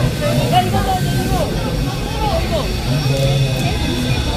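Busy outdoor crowd noise: overlapping, indistinct voices over a steady low mechanical rumble.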